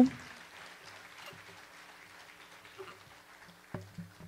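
Faint, light audience applause in a theatre, an even patter, with a single knock near the end.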